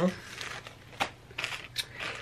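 Bagged hair bows being handled: a few short plastic crinkles and clicks about a second in and again near the end.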